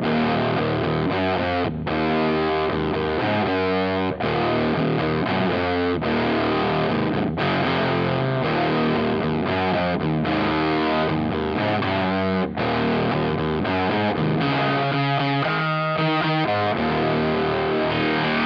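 Electric guitar played through a Boss FZ-2 Hyper Fuzz pedal: heavily fuzzed, held chords that change every second or two, with a short break at each change.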